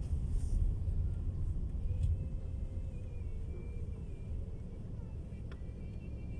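Car cabin noise as the car rolls slowly: a steady low rumble of engine and tyres heard from inside.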